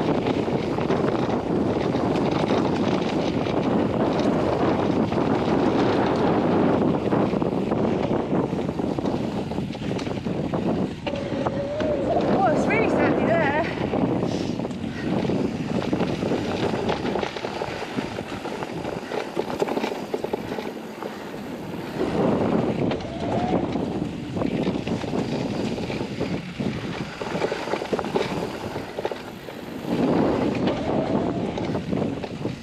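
Riding noise of an electric mountain bike descending a dirt trail: wind buffeting the chest-mounted camera over the rumble and rattle of tyres and frame on the rough ground, easing off for a few seconds past the middle. About twelve seconds in there is a brief wavering high-pitched squeal or call.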